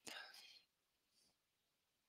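Near silence, with a faint breathy sound from a person's voice in the first half second, then nothing.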